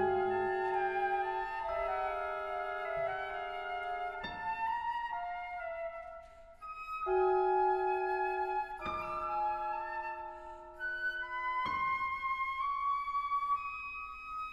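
Chamber ensemble of winds, strings and piano playing contemporary concert music: held wind tones and chords that shift every few seconds, with sharp new entries about four, seven, nine and twelve seconds in, and a brief hush a little past the middle.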